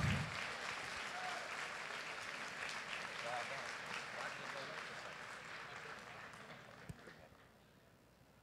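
Audience applauding in a large hall, dying away steadily over about seven seconds until it falls to near silence, with a short click just before the end.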